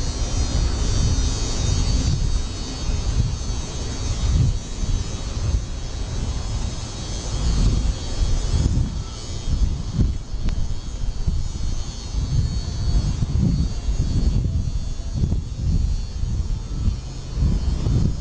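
Wind buffeting a phone's microphone: an uneven low rumble that rises and falls in gusts.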